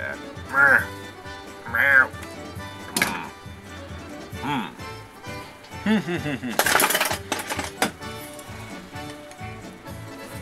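Background music plays throughout, with short voice-like calls over it. Sharp cracks and clicks come about three seconds in and again around seven seconds, as the plastic casing of a PCMCIA card is pried with pliers.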